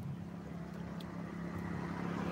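A steady low engine drone, slowly getting louder, with a short tick about a second in.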